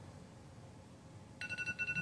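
Electronic timer alarm beeping, a high tone pulsing rapidly, starting about a second and a half in: the countdown for the exercise hold running out. Before it, near silence.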